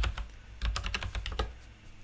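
Computer keyboard keys clicking in quick, uneven runs as a word is deleted and retyped.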